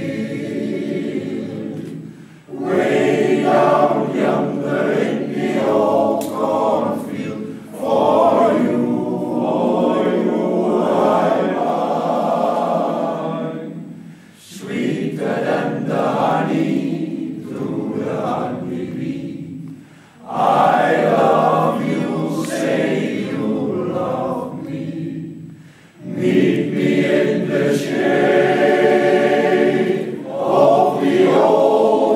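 Male-voice choir singing in harmony without accompaniment, in phrases of several seconds with brief breaks between them.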